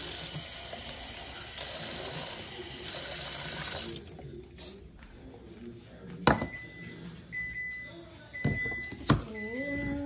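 Water running from a kitchen tap for about four seconds, topping up a mini blender cup, then shutting off. A few sharp knocks of the cup being handled follow, with a short high beep repeating about once a second through the second half.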